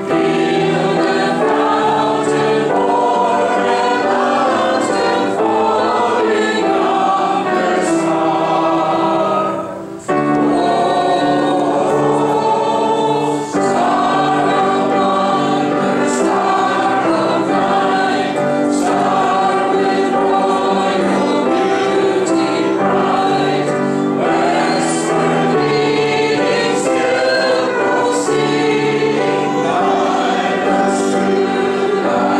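Congregation singing a hymn together, accompanied by piano and violin, with a short break between lines about ten seconds in.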